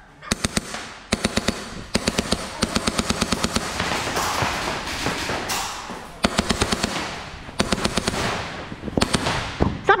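Rapid-fire airsoft gunfire: several bursts of quick shots, about a dozen a second, with short gaps between bursts.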